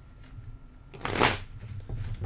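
Tarot deck being shuffled by hand, with soft handling sounds of the cards and one brief, louder rush of cards sliding together about a second in.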